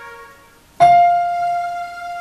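Digital keyboard playing a piano sound, slowly: a held note dies away, then after a short gap a new note is struck a little under a second in and rings on.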